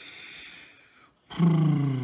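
A man's breathy exhale, then about a second and a half in a loud, drawn-out wordless groan that falls slowly in pitch. It is a sound of exasperation at yet another part that has to come off.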